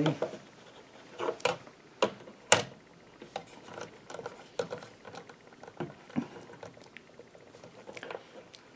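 Scattered clicks and knocks of a folding knife being handled and set into the clamp of a Wicked Edge WE130 sharpener: four sharper knocks in the first three seconds, then lighter clicks.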